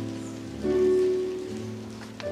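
Electronic keyboard playing slow, held chords. A new chord swells in about half a second in, and the bass note shifts about a second later.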